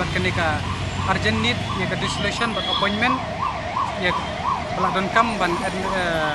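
Emergency vehicle siren with a fast up-and-down wail, its pitch rising and falling a couple of times a second, clearest in the middle stretch.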